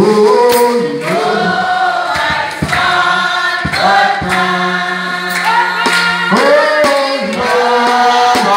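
Several voices singing a gospel song together in a loud group, with a few sharp hits now and then.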